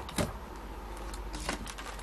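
Handling of a plastic binder page holding banknotes: a sharp click about a quarter second in and a fainter one about a second later, over a low steady hum.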